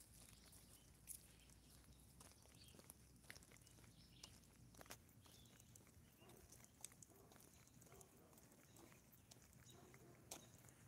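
Near silence with faint, irregular footsteps on a concrete sidewalk, soft ticks every second or two.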